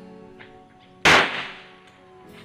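A single handgun shot about a second in, dying away over about half a second.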